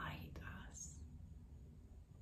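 A woman speaking softly, close to a whisper, for about the first second, then quiet room tone with a faint low rumble.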